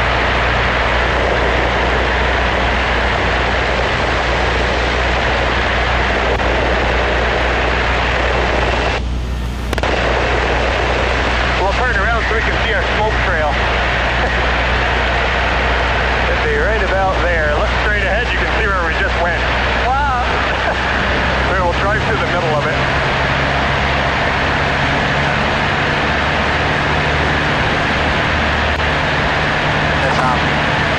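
Cessna 152's four-cylinder Lycoming O-235 engine and propeller droning steadily in cruise flight, heard from inside the cockpit. The noise dips briefly about nine seconds in, and the low engine tone shifts about two-thirds of the way through.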